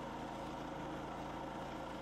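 Faint steady hum of a pressure washer running, with the hiss of its water spray on the pavement.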